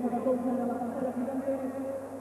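One long held vocal note: a steady, slightly wavering vowel sustained for about two seconds, ending near the close.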